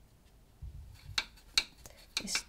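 Two light, sharp clicks of a paintbrush knocking against a metal watercolour paint box as the brush is loaded, after a soft low rumble.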